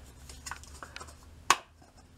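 Shaving soap and its container being handled: a few faint small clicks, then one sharp click about a second and a half in, as the Musgo Real soap is taken out of its container.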